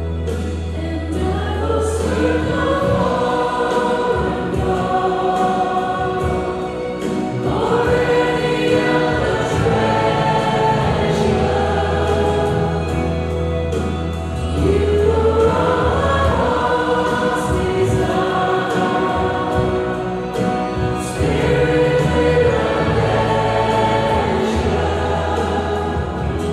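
Two women singing a slow worship song in unison into microphones over musical accompaniment with a sustained low bass.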